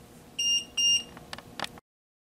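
Two short, high-pitched electronic beeps about half a second apart, followed by a few faint clicks; then the sound cuts off abruptly.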